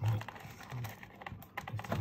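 A run of light, irregular clicks and taps as a meat cleaver is handled and lifted out of its presentation box.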